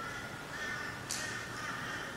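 Faint bird calls: a run of short, evenly pitched calls repeating one after another.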